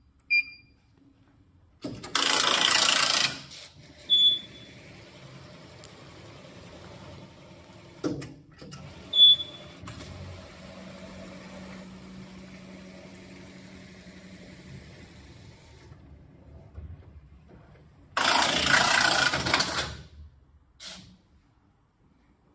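Computerised flat knitting machine resetting: two short beeps from the control panel, then the carriage running along the needle bed with a steady low motor hum and a couple more beeps. Two loud rushing bursts of noise, one about two seconds in and one near the end.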